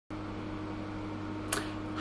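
Steady low hum of a small room, like a fan or appliance running, with one brief click about one and a half seconds in.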